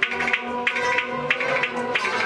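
Kashmiri Sufiana ensemble playing: sharp plucked rabab strokes and hand-drum beats about three a second over sustained bowed-string tones.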